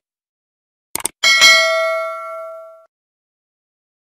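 Subscribe-button animation sound effects: a quick pair of clicks about a second in, then a bright notification-bell ding that rings and fades out over about a second and a half.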